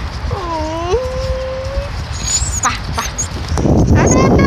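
A puppy whines once: one long note that dips, rises and then holds steady for almost a second, over a low rumble.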